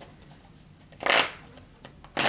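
A tarot deck being shuffled by hand: one short swish of cards about a second in.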